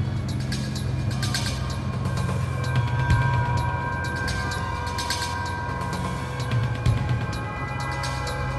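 Tense, dark background music: a steady low drone under long held notes, with scattered sharp ticking hits.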